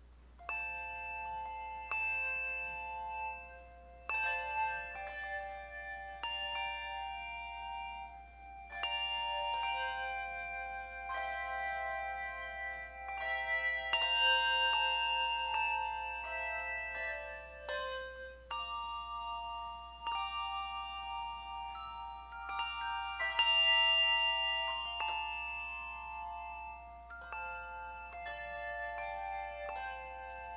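Handbell choir playing a piece: bells struck in chords and melody lines, each note left ringing so that the tones overlap.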